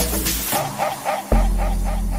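Amapiano house music. The deep bass drops out for under a second beneath a quick run of short stabs, then slams back in about a second and a third in.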